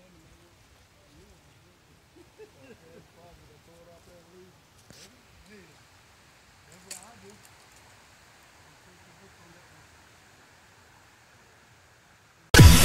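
Faint voices talking, not clear enough to make out words, with two short clicks about five and seven seconds in.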